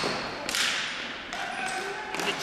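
Ball hockey sticks and ball clattering in a scramble at the goal on a gym floor, with one loud sharp crack about half a second in that echoes in the hall, then a few lighter knocks.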